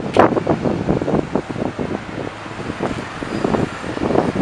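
Convoy of military pickup trucks driving past, engine and tyre noise, with wind buffeting the microphone in uneven gusts.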